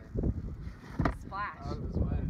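Low rumbling wind and handling noise on the microphone, with one sharp knock about a second in, followed by a brief voice.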